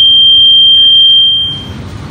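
Public-address microphone feedback: a single loud, steady, high-pitched whistle that stops about one and a half seconds in.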